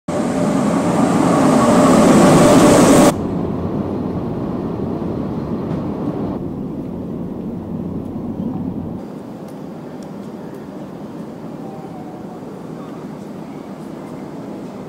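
Al Boraq high-speed train (an Alstom double-deck trainset) at a station platform: a loud rushing noise that cuts off abruptly about three seconds in. Then comes a quieter steady train rumble that changes abruptly twice and includes the running hum inside a passenger car.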